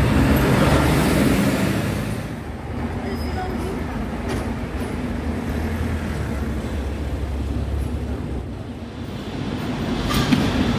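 City street traffic noise: a steady low rumble of vehicles passing close by, louder for the first couple of seconds, then easing a little.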